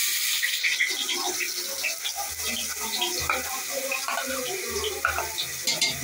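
Hot cooking oil sizzling in an aluminium pressure cooker, a steady hiss.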